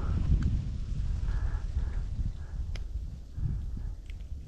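Wind rumbling on the microphone, with soft rustling and a few faint sharp clicks from handling a small largemouth bass and its hook.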